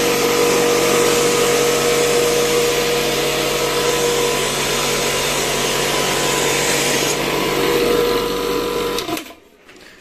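Ingco AC20248 2 HP electric air compressor running steadily with a constant tone, its pump refilling a tank that has just been emptied of air. The sound cuts off about nine seconds in.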